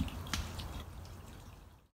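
Faint background hiss with a few soft clicks, one about a third of a second in, fading out to silence near the end.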